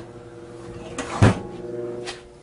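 Toaster oven being loaded and shut: a light knock about a second in, then a louder clunk of the door closing a quarter-second later.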